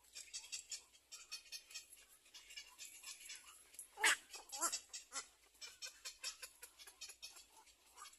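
Animal calls: fast, high chittering throughout, with two louder calls falling in pitch about four seconds in.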